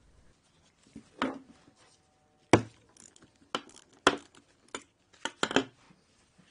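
Light knocks and clicks of a small metal engine carburetor being handled and set against the bench as its float-bowl bolt is unscrewed by hand. There are about half a dozen, the sharpest about two and a half seconds in.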